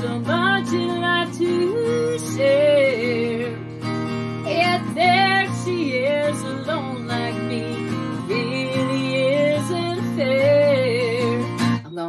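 Music: a woman singing a melody to her own strummed acoustic guitar.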